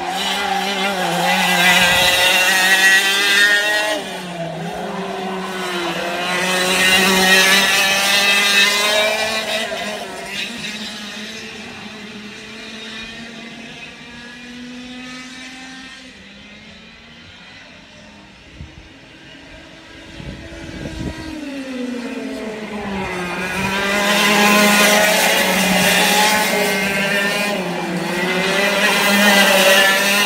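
F100 racing karts' 100cc two-stroke engines going round the circuit, revs falling and rising as they brake and accelerate through the corners. The sound fades for several seconds in the middle and grows loud again near the end as two karts come past together.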